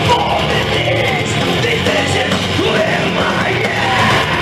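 Death metal band playing live at full volume, with heavy distorted guitars and drums and a yelled vocal over them.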